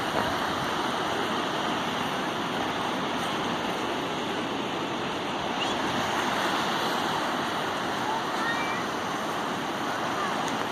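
Steady wash of ocean surf breaking on a rocky shore, with a few faint, short high calls that rise or fall in pitch.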